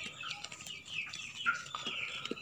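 Chickens clucking faintly, with a few soft clicks from a sheep nibbling dry grass in a plastic feed tub.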